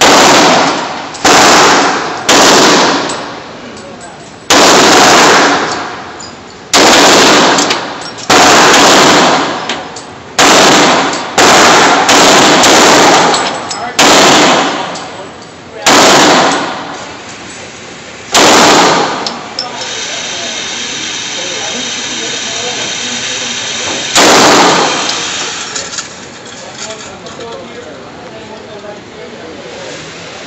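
Glock 17 9mm pistol fired shot after shot, about a dozen sharp reports one to two seconds apart, each ringing out in the echo of an indoor range. A steady hiss fills a gap of about four seconds before one more shot.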